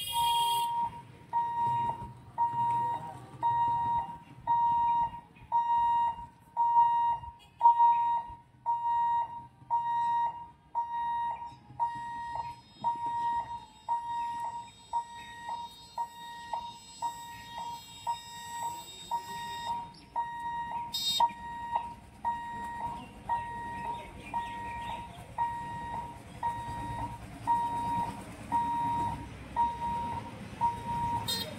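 Railway level-crossing warning buzzer sounding a steady, evenly repeating high beep a little faster than once a second, over the low rumble of waiting vehicles. A short sharp burst of noise cuts in about two-thirds of the way through.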